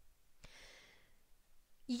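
A speaker's soft breath between sentences, lasting about half a second and starting about half a second in, with a faint mouth click or two.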